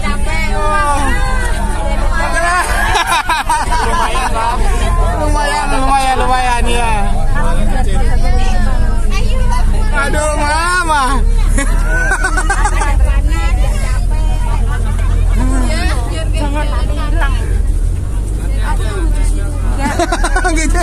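Many passengers chattering at once inside a bus, over the low, steady rumble of the bus's engine.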